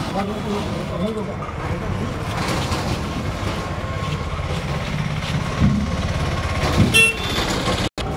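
Men's voices calling to one another as they heave a heavy load, over a steady low rumble of a vehicle engine, with a sharp click near the end.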